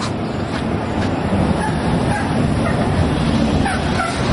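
Steady outdoor street noise, mostly a low rumble of road traffic, with a few faint short chirps about halfway through and again near the end.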